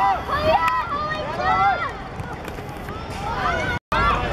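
High-pitched children's voices shouting and calling out across a football pitch during play. The sound cuts out briefly near the end.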